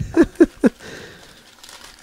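A man chuckling in three short bursts, then a quieter rustle of brown paper wrapping being opened by hand.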